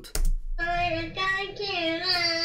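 A child singing long held notes, starting about half a second in.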